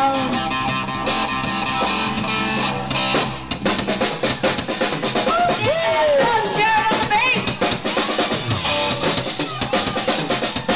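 A live rock band plays electric guitars and bass over a drum kit. About three seconds in, the drumming gets busier and notes that bend in pitch ring out over it.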